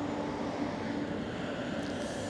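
Steady hum of an electric trike's 750-watt front hub motor as it rides, over a haze of tyre noise on asphalt.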